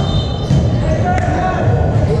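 A volleyball being struck during a rally: sharp smacks of hands on the ball about half a second and a little over a second in, ringing in a large gym hall over a hubbub of players' and spectators' voices.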